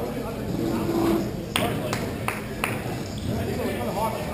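Four sharp clacks of hockey sticks and puck, a few tenths of a second apart, about midway through, over players' voices and shouts in the rink.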